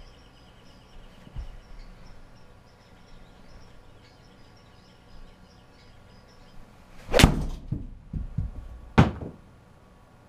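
An Adams MB Pro Black 6-iron striking a golf ball off a hitting mat into a simulator impact screen: one sharp, loud strike about seven seconds in, then a few softer knocks and a second sharp knock almost two seconds later.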